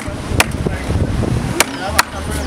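A wooden stick struck against the back of a knife blade, driving it through a mahi-mahi to cut it crosswise: a few sharp knocks, unevenly spaced.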